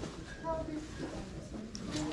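Faint voices of people talking in the background, with a short burst of a voice about half a second in.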